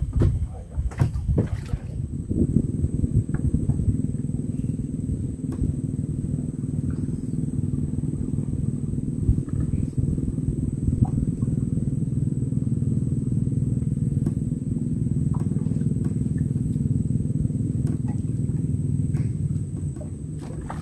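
A small fishing boat's engine running steadily at low speed with an even, low hum. A few knocks come in the first two seconds before the hum settles.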